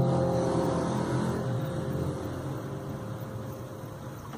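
Nylon-string classical guitar's final strummed chord ringing and slowly fading away.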